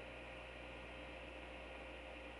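Room tone: a steady hiss and low hum picked up by a webcam microphone, with a faint steady tone running through it.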